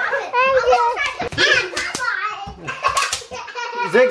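Young children squealing and chattering excitedly, with scattered sharp pops and crackles of bubble wrap being stepped on.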